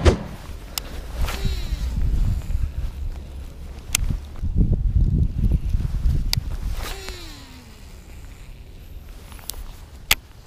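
Twice, a whine that falls in pitch over about a second, typical of a baitcasting reel's spool spinning down as the line pays out on a cast. Around it come a few sharp handling clicks and knocks, footsteps and a low rumble.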